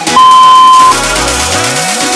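Interval timer beep: one longer, higher-pitched beep about half a second long that marks the start of the next work interval, after two lower countdown beeps. Electronic background music runs underneath, with a rising tone sweeping upward in the second half.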